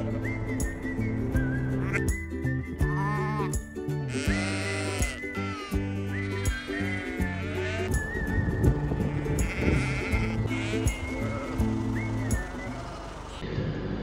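Sheep bleating several times, mostly in the first half, over background music.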